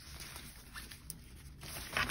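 Soft rustling of a thin, foldable fabric reusable shopping bag being spread out and smoothed flat by hand, with one small tick about a second in.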